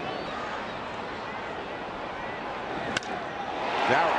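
Wooden baseball bat hitting a pitched ball: one sharp crack about three seconds in, over a steady ballpark crowd murmur that swells right after the hit.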